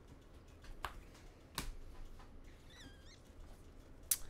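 Trading cards handled in the hand, with two faint, sharp clicks as cards are flicked through the stack. There is also a brief, faint, wavering high squeak near the end.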